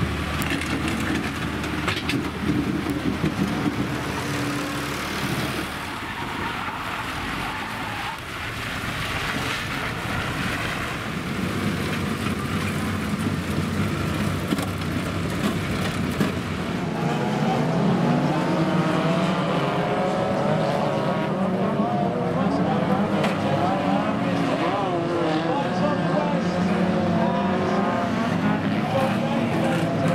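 A tractor engine running while wrecked banger cars are moved, then, from about 17 seconds in, several banger racing cars' engines revving hard and rising and falling in pitch on the track.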